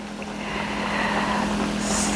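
Plantain slices deep-frying in hot vegetable oil, near the golden-brown stage: a steady sizzle of bubbling oil that grows gradually louder.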